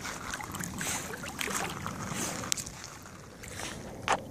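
American Pit Bull Terrier paddling and wading in shallow water, the water sloshing and splashing around it, with a few brief sharper splashes.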